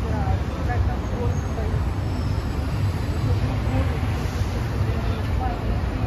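Busy city street ambience: steady traffic noise with a heavy low rumble, and scattered snatches of passers-by talking.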